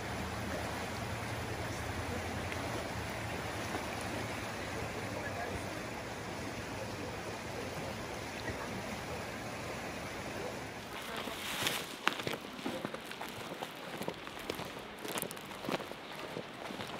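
Fast, churning river water rushing steadily. About eleven seconds in, it gives way to footsteps crunching on gravel.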